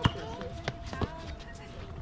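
Players running on an outdoor basketball court: a few sharp thuds of the ball and sneakers on the hard court, the first near the start and two more about a second in, with voices of players calling out.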